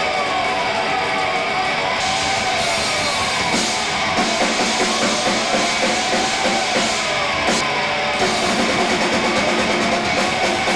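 A live rock band playing, with electric guitar and drum kit. The guitar line rises and falls in pitch in repeated arching swoops, and the drums grow more prominent from about two seconds in.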